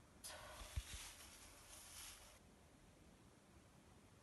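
Brief rustling and scraping for about two seconds, with two soft bumps near its start, as bamboo stakes are set into the potting soil of a monstera's pot.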